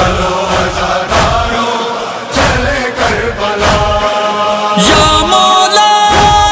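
Urdu nauha (Muharram lament) chanted by male voices, a long held note coming in near the end, over a steady thump about every second and a quarter that keeps the beat of matam.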